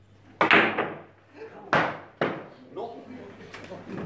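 Carom billiard balls struck by the cue and knocking against each other and the cushions during an artistic-billiards shot: a sharp, loud clack about half a second in, then two more just before and just after two seconds, with lighter knocks between.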